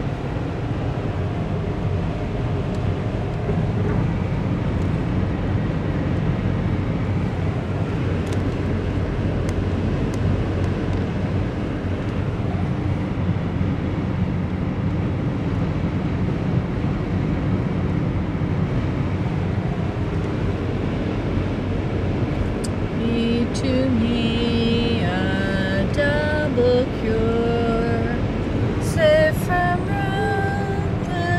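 Steady road and engine rumble heard inside a car cabin at highway speed. About three-quarters of the way in, a melody of held, bending notes begins over it.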